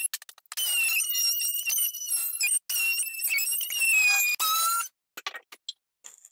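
Cordless oscillating multi-tool cutting a bulkhead: a steady high-pitched whine with brief breaks where the blade stops and restarts, sinking slightly in pitch under load before it stops a little before five seconds. A few short clicks follow.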